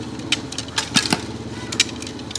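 A steady engine hum with five sharp knocks and clacks spread unevenly across two seconds.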